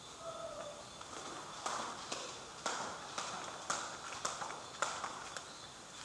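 Footsteps on a hard floor, a sharp click about every half second, starting about a second and a half in.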